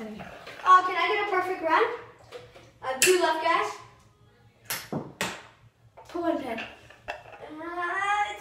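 Children's voices talking and calling out in a small room, with two short sharp sounds about five seconds in.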